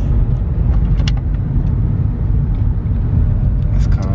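Steady low rumble of road and engine noise inside the cabin of a moving car, with a faint click about a second in.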